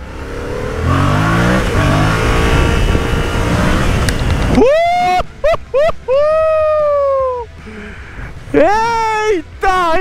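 Yamaha MT-07 parallel-twin on its stock exhaust accelerating hard, its revs climbing, dropping back and climbing again. The engine sound then cuts off about four and a half seconds in, giving way to long, high-pitched whoops from a person.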